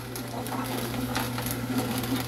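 Nama J2 slow masticating juicer running: a steady motor hum with a few faint ticks as it presses the produce.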